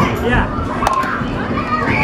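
Children's voices and chatter filling a busy arcade, with a single sharp knock a little under a second in.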